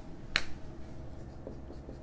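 One sharp click about a third of a second in, from a whiteboard marker, followed by a couple of faint light taps over a low steady room hum.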